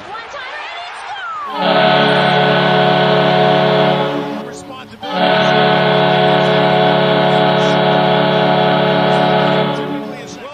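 Dallas Stars goal horn: a deep, many-toned air horn sounding two long blasts, the first about two and a half seconds and the second about four and a half, with a short break between them. It signals a goal.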